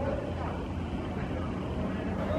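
Indistinct voices of players on an outdoor soccer pitch, over a steady low rumble.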